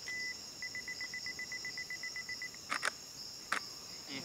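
Steady high-pitched drone of a rainforest insect chorus. Over it a single high note sounds, first as one long note, then as a quick run of short pips, about six a second, that stops partway through. A few sharp clicks follow near the end.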